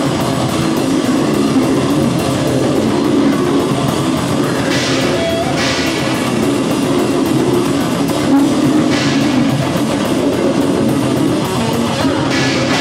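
Death metal/grind band playing live: distorted electric guitar and bass over a drum kit, a loud, dense, unbroken wall of sound.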